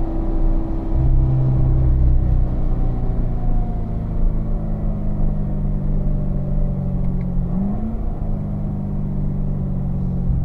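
Corvette V8 heard from inside the cabin, its note dropping as the car slows off the throttle. About three-quarters of the way through, a short rising rev blip comes as it shifts down from fourth to third.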